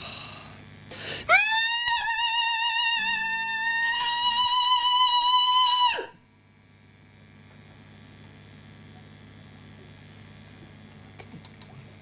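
A man's high-pitched, metal-style scream: one long held note of about five seconds with a wavering vibrato, sliding up into pitch at the start and dropping away at the end.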